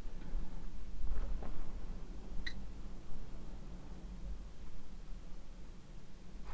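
Low steady electrical hum and room noise, with a brief faint high blip about halfway through.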